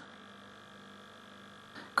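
Faint, steady mains hum with a little hiss from the Intel CD 2100 cassette deck's power transformer, which is very noisy.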